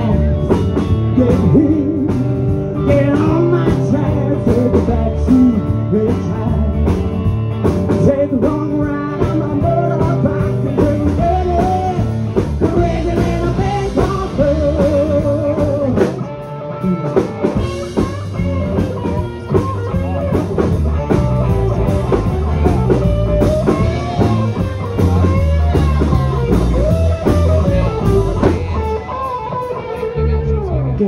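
Live rock band playing electric guitars and a drum kit, with a wavering lead line held over the chords. The music drops back briefly about halfway through.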